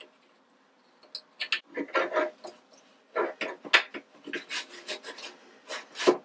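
Metal parts of a bench drill press's quill return-spring housing being handled and worked by hand: a run of short, irregular scraping and rubbing strokes that starts about a second in.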